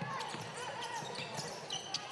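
A basketball being dribbled on a hardwood court during play: faint, irregular bounces heard over the background noise of an indoor arena, with distant voices from players and crowd.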